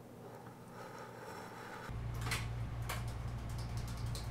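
Quiet room tone, then about two seconds in an old-style telephone bell starts ringing, a rapid metallic rattle over a low hum that carries on to the end.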